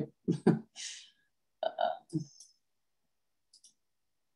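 A person's short, breathy laugh in a few quick bursts, then two faint clicks near the end.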